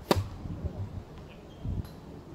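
Tennis racket striking the ball on a forehand: one sharp pock just after the start, with a fainter click near the end.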